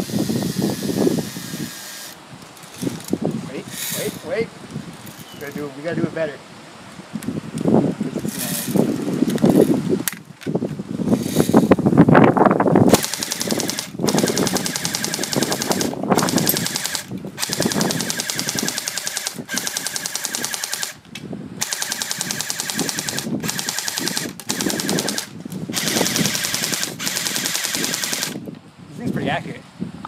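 CYMA AK-style electric airsoft rifle firing full-auto. From about 13 seconds in it fires seven bursts of one to three seconds each with short pauses between them, the gearbox cycling in a rapid, even buzz.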